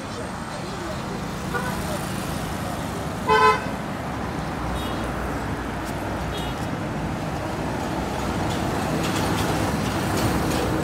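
Town street traffic with vehicles running past, and one short, loud vehicle horn toot about three and a half seconds in.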